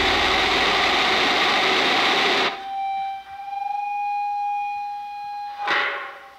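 Distorted punk-rock band playing a dense wall of guitars and drums that cuts off abruptly about two and a half seconds in. A single held electric guitar note then rings on alone, wavering slightly, with a brief loud stab near the end.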